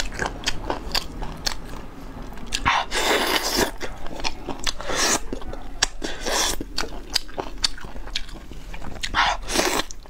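Close-miked eating of a braised chicken drumstick: wet biting and chewing with many quick mouth clicks, and a few longer, louder bursts about three seconds in and again near the end.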